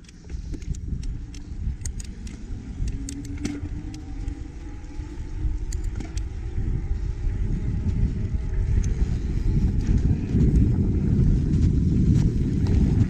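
Wind rumbling on the microphone of a camera on a moving mountain bike, with scattered clicks and rattles from the bike. The rumble grows louder in the last few seconds.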